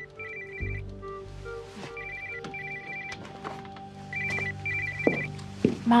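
A phone ringing: an electronic trilling double ring repeating about every two seconds, three times, over soft background music.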